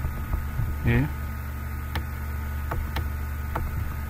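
Steady low electrical mains hum on the recording. A few faint mouse clicks sound through it, and a short "eh" is voiced about a second in.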